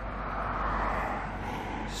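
A road vehicle passing: a rush of tyre and engine noise that swells to a peak about halfway through and then eases, over a steady low rumble.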